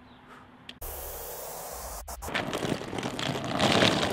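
Rushing outdoor noise on the microphone, likely wind with street ambience. It cuts in suddenly under a second in, drops out briefly at about two seconds, then grows louder toward the end.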